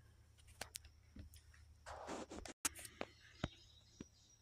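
Faint, scattered clicks and a short rustle as disassembled chainsaw parts are handled on a wooden workbench. The sound cuts out completely for a moment midway.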